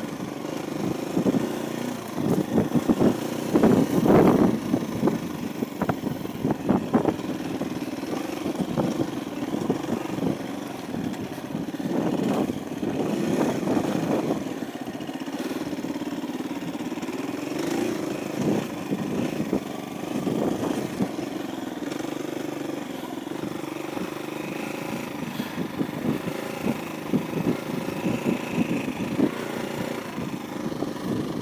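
KTM 350 EXC-F dirt bike's single-cylinder four-stroke engine running while riding a rough dirt trail, the engine note rising and falling as the throttle opens and closes, loudest a few seconds in and again around the middle. Irregular knocks and rattles run through it.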